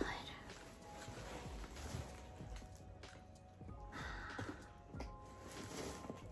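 Faint background music with held notes, under soft rustling as fabric and bubble wrap are handled. There is a brief breathy whisper about four seconds in.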